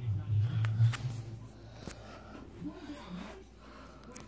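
Handling noise from a phone held in the hand as objects are moved about on a table: a low rumble in the first second, then faint knocks and clicks.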